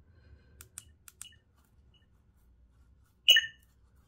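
A few light clicks of the lightsaber hilt's buttons being pressed in the first second and a half, then near the end a short electronic beep from the Crystal Focus 10 soundboard's speaker, a menu feedback sound in its volume setting.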